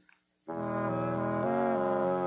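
After a moment's silence, sustained brass chords of the program's closing music come in about half a second in. They move to a new chord about a second later.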